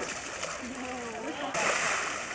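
Brown bears wrestling in a pool, splashing the water, with a loud splash about one and a half seconds in that runs to the end.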